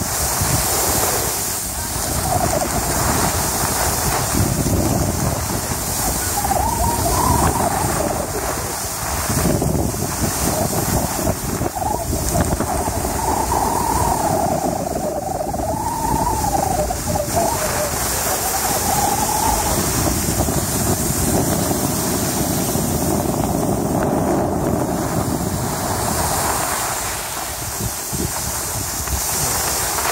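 Wind rushing over the microphone and skis hissing and scraping on packed snow during a downhill run: a steady, even noise with no breaks.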